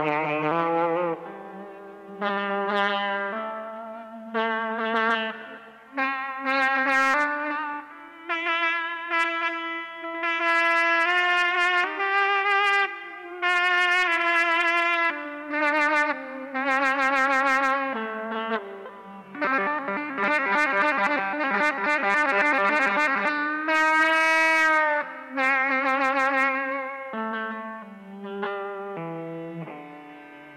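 Fender Stratocaster-style electric guitar played by a jet of compressed air on the strings, heard through its amplified signal: a run of sustained, horn-like notes with wavering pitch, one after another with short breaks. The playing thickens about two-thirds through into a held, wavering high note, then trails off near the end.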